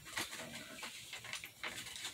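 Sheet of paper rustling and crinkling in irregular little crackles as it is handled and folded by hand.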